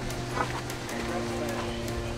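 Sustained background music tones with scattered voices of people talking.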